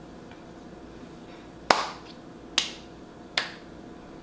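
Three sharp hand clicks, the first about a second and a half in and the rest just under a second apart.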